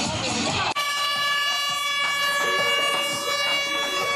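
Dance music playing over loudspeakers cuts off about three-quarters of a second in. A loud, steady, horn-like note takes its place and is held for about three seconds.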